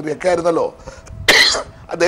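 A man's speech trails off, then a single short, harsh cough a little past halfway through a brief pause.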